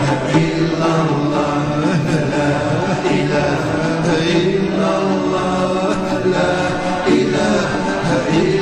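Slow devotional chant: voices holding long, steady notes and gliding slowly between them over a low drone, in the manner of a Sufi dhikr.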